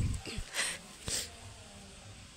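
Three short rustles of leafy garden plants brushing, all within about the first second and a quarter, then a faint steady background.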